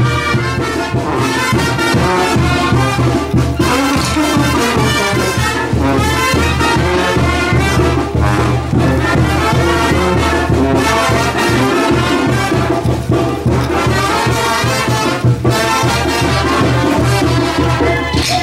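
Brass band playing dance music, with a sousaphone bass under trumpets and trombones.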